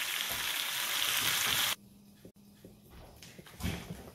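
Flanken-cut beef short ribs sizzling in a hot frying pan on raised heat for searing: a steady hiss that cuts off suddenly just under two seconds in. Then faint room sound with a low hum and one brief soft sound near the end.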